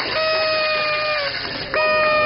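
Two loud blasts of a horn-like tone, each about a second long with a short gap between, the pitch sagging slightly as each one ends.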